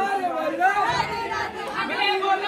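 Several people's overlapping voices: a group talking, calling out and laughing together in a crowd, with no single clear speaker.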